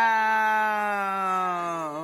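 A person's voice holding one long, steady vowel, dipping slightly in pitch and fading near the end.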